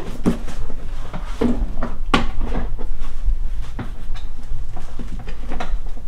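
Sharp plastic clicks and knocks of an infant car seat being fitted and pushed onto a pushchair frame, half a dozen separate knocks spread over a few seconds.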